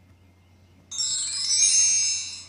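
A bright, tinkling chime of many high tones, a slide-transition sound effect from the presentation, starting suddenly about a second in and fading away over about a second and a half.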